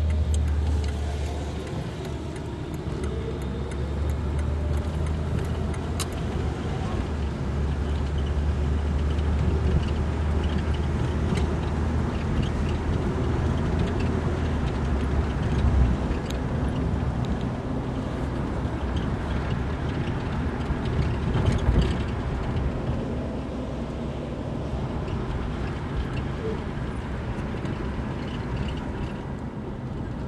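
1977 Plymouth Fury's engine idling steadily while the car stands still, a low hum under general road and traffic noise, with a few short clicks and two brief louder swells.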